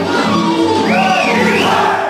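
Bulgarian folk dance music playing, with two whooping shouts, each rising then falling, about a second in: the dancers' calls during the dance.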